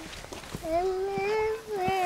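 An animal's long, drawn-out cries, each about a second long at a fairly steady pitch: one begins about half a second in, and another follows closely just before the end.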